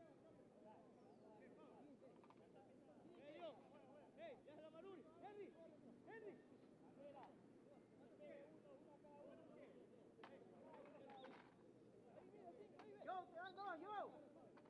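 Faint, distant shouting of football players and onlookers across an open pitch, with a few louder calls about three to five seconds in and again near the end.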